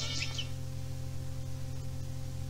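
The last notes of a folk song die away in the first half second, leaving a steady low hum with faint hiss from the recording.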